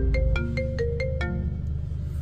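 A phone ringtone: a quick, marimba-like melody of short plucked notes, several a second, over a steady low hum, fading near the end.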